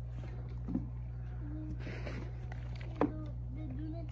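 Faint voices talking quietly over a steady low hum, with one sharp click about three seconds in.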